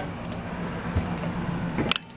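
Steady low mechanical hum of a running machine, with a soft thump about a second in and a short click near the end.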